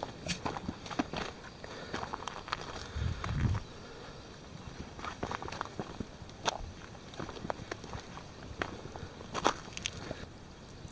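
Footsteps crunching and scraping over rough lava rock and low brush at a steady walking pace, with a brief low rumble about three seconds in.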